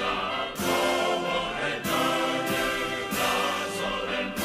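Music with a choir singing sustained chords, a new accented chord coming in about every second and a quarter.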